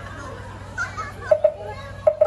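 Faint background chatter of voices, including children, over a low steady hum, with two quick percussive knocks about one and a half seconds in.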